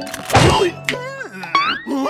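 Cartoon sound effects over background music: a thump about half a second in, then a cartoon character's wordless mumbling, rising and falling in pitch.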